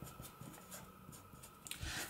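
Felt-tip pen writing on paper: faint, irregular scratching strokes as letters are drawn, with a soft low thud near the end.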